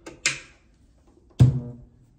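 An instrument cable being plugged in, giving a sudden loud pop through a small Fishman Loudbox acoustic amplifier about one and a half seconds in, with a brief ringing tail; a short scratchy noise of the cable jack comes just before, near the start.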